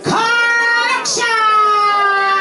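A woman's voice through a microphone and PA, singing long drawn-out held notes: a first note lasting about a second, then a second, longer note held steadily and sliding slightly down in pitch.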